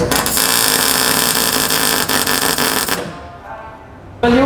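MIG welder arc crackling steadily as a bead is laid on a steel roll-cage tube, cutting off about three seconds in.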